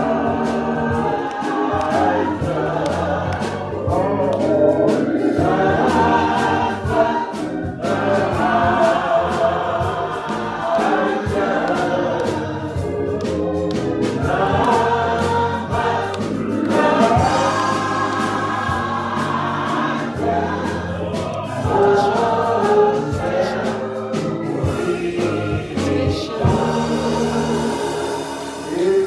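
Church choir singing a gospel song with instrumental accompaniment.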